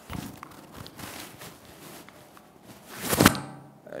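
Footsteps and rustling as a person walks to a lectern, with one loud rustling thump about three seconds in.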